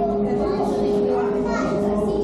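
Background chatter of visitors, children's voices among them, over a steady low hum.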